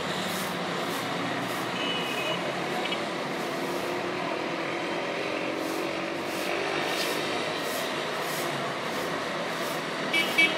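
Steady morning street-traffic din from cars, buses and motorcycles running on a city road, with a few short high beeps of vehicle horns about two seconds in.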